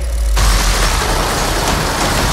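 Automatic gun firing one long unbroken burst. It starts suddenly about a third of a second in, over a deep bass rumble.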